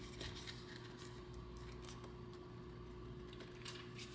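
Faint rustling and light clicks of plastic binder envelopes and paper sheets being turned and handled, over a low steady hum.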